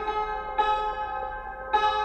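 Instrumental music: a string instrument playing a slow melody, single notes struck about a second apart, each ringing out and fading.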